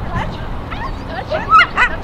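A dog barking in short, high yips, several in quick succession, with the two loudest coming near the end.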